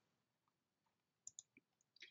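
Near silence: room tone, with two faint, brief clicks a little over a second in.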